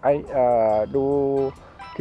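A man's voice speaking Thai, with two long drawn-out words, over faint background music.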